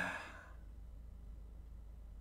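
A man's breathy sigh, tailing off in the first half second, followed by quiet room tone with a faint low hum.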